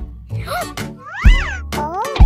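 Children's song backing music with a steady beat, over which a toy trumpet plays short honks that slide up and back down in pitch.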